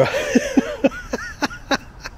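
A man chuckling quietly: a few rising-and-falling voiced sounds, then a run of short breathy laughs about four a second.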